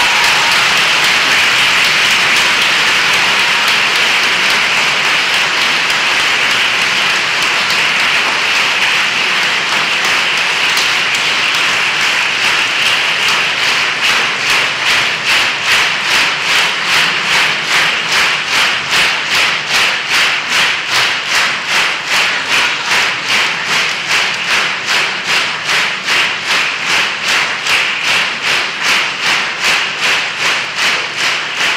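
Concert-hall audience applauding. About halfway through, the scattered clapping falls into unison rhythmic clapping of about two and a half claps a second.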